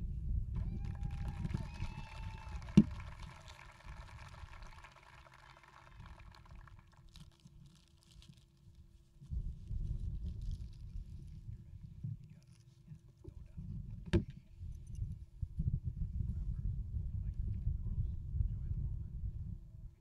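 Low, gusty rumble of wind buffeting an outdoor microphone, dropping away for a few seconds mid-way and returning, under a faint steady hum. Two short knocks, about three seconds in and near the middle.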